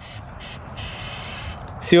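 Aerosol can of clear Flex Seal rubber sealant spraying: a brief spurt, then a longer steady hiss of about a second.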